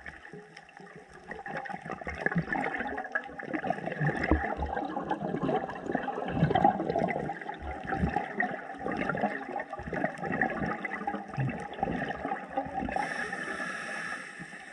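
Scuba diver's exhaled bubbles gurgling out of the regulator underwater, building up about a second and a half in and running for about ten seconds before easing off near the end.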